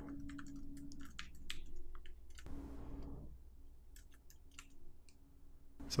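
Typing on a computer keyboard: a quick run of key clicks, a pause, then a few more keystrokes.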